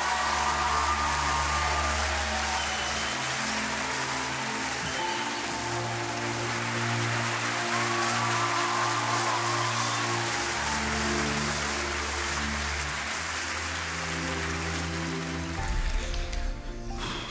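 Studio audience applauding steadily, a continuous patter of clapping, over slow background music with long held chords.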